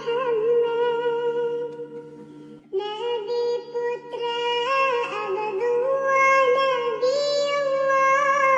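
A high, child-like singing voice sings a shalawat melody in long held notes over a steady low backing tone. The singing drops away briefly about two seconds in and comes back just before the three-second mark.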